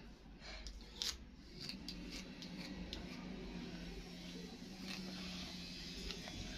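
Plastic comb scratching through thick, tightly coiled hair in a few short, quiet strokes, over a faint steady hum.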